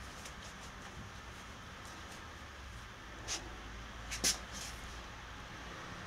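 Low, faint room hum with two short hissing sounds about three and four seconds in: forced exhales of a man straining to bend a very stiff spring bend bar shut.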